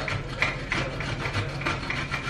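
Block of cheese being rubbed against a handheld grater over a pot of pasta, in quick rasping strokes about three or four a second.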